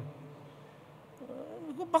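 A pause in a man's speech into a microphone: faint room tone for about a second, then a faint, wavering voice sound that leads into speech again near the end.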